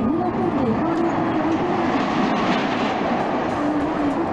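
Steel roller coaster train running along its track, a loud continuous rail noise with a wavering tone over it.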